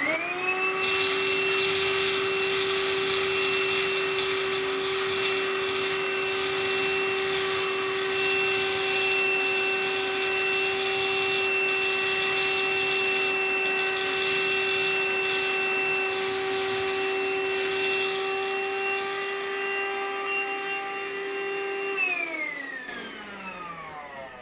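Handheld vacuum cleaner switched on, its motor spinning up within the first second to a steady whine over a loud rushing hiss as it sucks coarse grit potting substrate up through its nozzle. Near the end it is switched off and the whine falls away in pitch.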